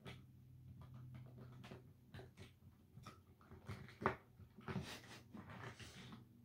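Faint clicks, taps and small knocks of little glass perfume sample vials being handled and their stoppers worked at, with one sharper click about four seconds in and a brief breathy rush just before five seconds.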